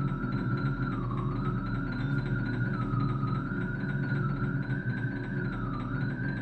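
Contemporary music for piano and electronics: a sustained high electronic tone that sags in pitch and climbs back every second or two, over a dense, steady low texture.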